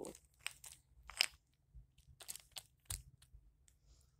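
Handling noise: a scattered run of light clicks and rustles as wooden toy trains and the phone are moved about on a couch, the loudest click about a second in.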